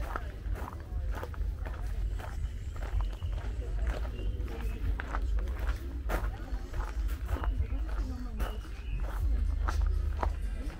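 Footsteps of someone walking at a steady pace, about two steps a second, over a constant low rumble, with faint voices of people in the background.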